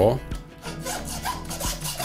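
Hacksaw blade sawing back and forth through a lamb shank bone at the joint, in repeated short rasping strokes.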